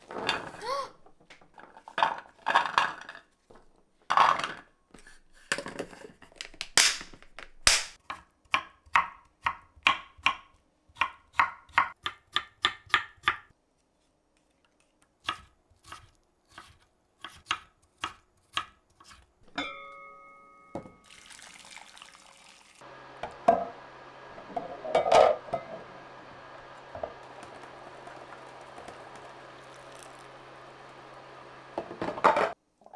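A cloth bundle rustles in the hands, then a kitchen knife chops plum on a wooden cutting board in quick regular knocks, about three a second. Two short electronic beeps follow, and then the steady hiss and low hum of a pot of water heating on an induction cooktop, with a few clinks of a plastic container in the pot.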